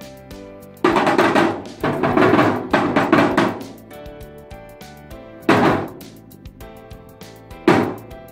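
Background music with a steady beat, broken by four loud, noisy percussion crashes, struck with mallets, each dying away within a second or two; the two longest come early and run together.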